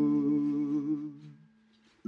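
A man's voice holding the song's final sung note with vibrato over a ringing ukulele chord. Both fade out about a second and a half in.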